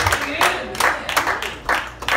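A congregation clapping in an uneven rhythm, about three claps a second, with voices calling out over it.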